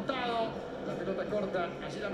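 Low-level speech: a voice talking quietly, with no other distinct sound.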